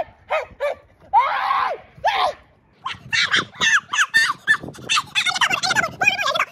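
A man's voice sped up by fast-forwarding, high-pitched and squeaky: short separate calls at first, then rapid, continuous chatter from about three seconds in.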